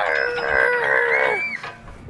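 A man's drawn-out vocal cry, held for about a second and a half and ending on a short upward lift in pitch.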